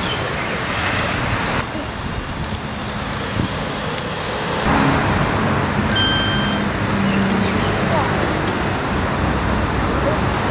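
Steady street traffic noise from road vehicles, with a short high beep about six seconds in.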